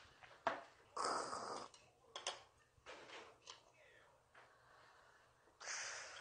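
A woman's breathy exhale after a shot of soju, about a second in. A few light clicks follow, and another breath near the end.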